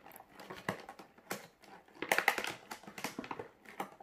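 Scattered light clicks and rustling of hand handling while a small feeder insect is being caught for a tarantula.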